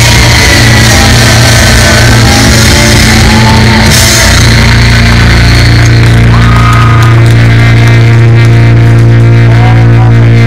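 Loud, distorted live punk rock band through a club PA. About four seconds in, the drums and cymbals drop away, leaving the guitar and bass ringing out on a held, droning low note with feedback tones above it, as the song ends.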